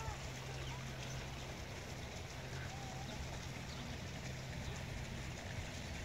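Faint outdoor background: a steady low hum with faint, distant voices now and then.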